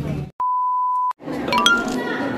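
An electronic beep: one steady pure tone lasting just under a second, cut in with dead silence before and after it. After it comes the hum of a large room, with a quick rising run of short bright tones near the end.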